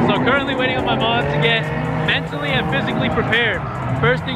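A man talking over a car engine running nearby, heard as a steady low drone under his voice from about a second and a half in.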